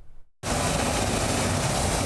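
Water from a broken water main gushing up through the street surface: a loud, steady rushing that starts abruptly about half a second in.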